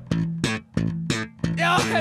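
A live band's electric guitars and bass guitar playing short, choppy rhythmic stabs over a steady low note.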